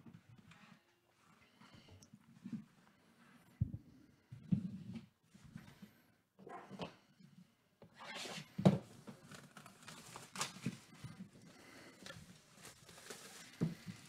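Plastic shrink-wrap being slit with a small blade and pulled off a cardboard trading-card box: irregular crinkling, scratching and tearing with a few sharp clicks, louder and busier from about eight seconds in.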